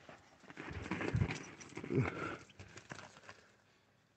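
Faint handling noise of a handheld phone being swung around: light scuffs and clicks, with two soft low bumps about one and two seconds in.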